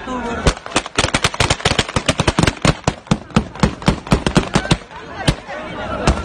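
Rapid gunfire: a long run of sharp shots in quick, irregular succession, roughly three to five a second, starting about half a second in, with a crowd shouting between the shots.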